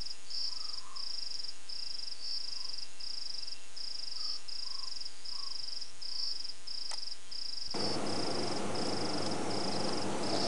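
An insect chirping in evenly spaced, high-pitched pulses, about two a second, keeping a steady rhythm throughout. A broad background hiss comes up about eight seconds in.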